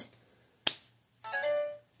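A single finger snap about two-thirds of a second in, followed by a short steady tone of one held pitch that lasts under a second.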